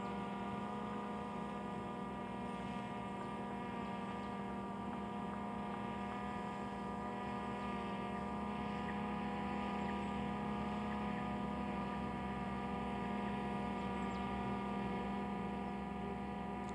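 A steady electrical hum made of many even tones, unchanging in pitch and level.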